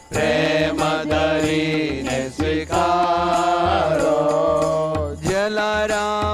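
Hindu devotional chant sung over musical accompaniment, with percussion keeping a steady beat. The voice breaks off briefly near the end before a new phrase begins.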